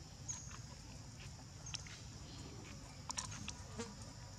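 Faint, steady high-pitched insect drone, with a few short sharp clicks and chirps scattered through it.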